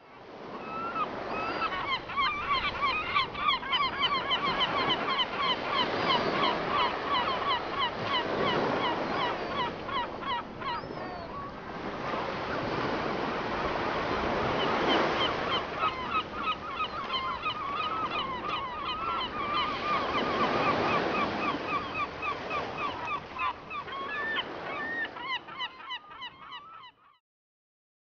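A flock of birds calling continuously in many short, rapid calls over waves washing in slow swells. It all fades out and stops shortly before the end.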